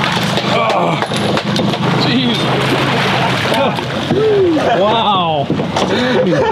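Boat's outboard engine running with a steady low hum under wind and water noise, then excited wordless voices rising and falling about four to five seconds in as the hooked Chinook salmon nears the boat.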